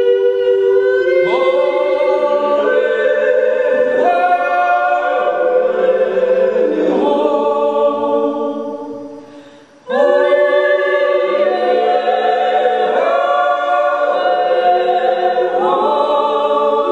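Several voices singing a Styrian yodel unaccompanied in harmony, holding notes and stepping between pitches. About eight seconds in, the singing fades away, and it comes back in abruptly about two seconds later.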